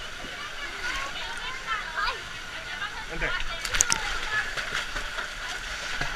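Pool water sloshing and lapping right at a waterproof action camera riding half-submerged at the surface, with a few sharp splashes a little before four seconds in.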